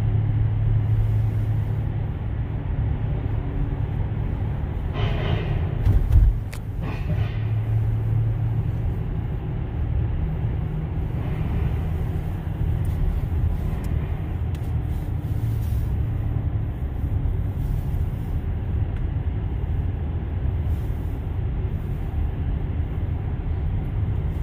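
Steady low road rumble of a Tesla electric car driving through a road tunnel, heard from inside the cabin. About six seconds in there is a brief loud thump.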